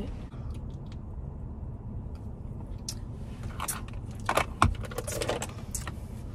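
A dropped drink being opened and handled by hand inside a car cabin: a few sharp clicks and short rustles, the loudest pair about four and a half seconds in, over a steady low rumble.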